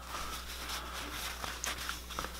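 Denim fabric being handled and moved off a sewing machine bed: a faint rustle with a few light clicks in the second half, over a steady low hum.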